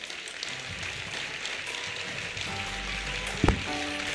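Audience applauding at a steady level. Electronic music with a low bass fades in under the applause about two and a half seconds in, with a single sharp thump shortly before the end.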